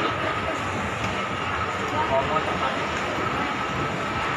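Shopping-mall ambience: a steady mechanical rumble with a faint high hum and scattered distant voices.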